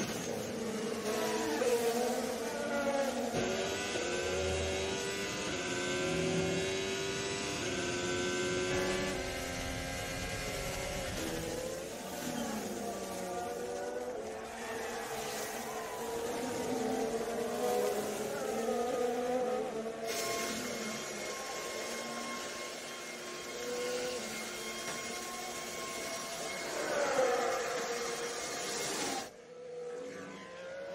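Formula 1 cars' 1.6-litre turbocharged V6 hybrid engines at racing speed, two cars running close together, the engine note climbing and dropping over and over through gear changes. The sound changes abruptly a few times.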